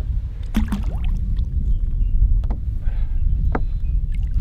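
Steady low wind rumble on the microphone, with a few short knocks and a small splash as a largemouth bass is released into the water beside the boat.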